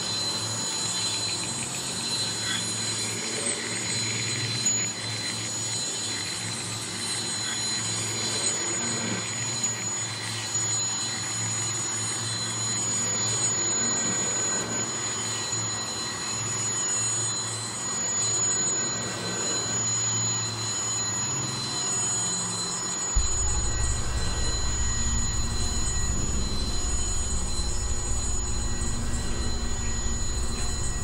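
Jean Tinguely's motorised kinetic sculptures running: metal wheels, belts and arms turning with squeals, a steady high-pitched whine and scattered clicks. About two-thirds of the way through a deep steady hum sets in abruptly.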